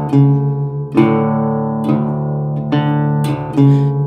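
Guitar playing a blues accompaniment between sung lines, with notes struck about once a second and left to ring.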